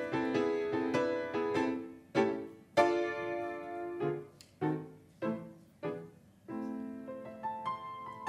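Solo Grotrian grand piano: quick repeated notes, then a loud chord about three seconds in and a few separate chords left to ring and die away, with steadier chordal playing returning near the end.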